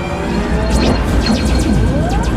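Film action soundtrack: dramatic music over a deep rumble and a dense run of crashes and metallic impacts starting about a second in, with a rising whine near the end.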